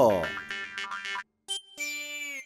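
Cartoonish comedy sound effect: a pitch that slides steeply downward over about half a second, followed by short plucked notes of comic background music. The music drops out briefly and a new sustained cue begins near the end.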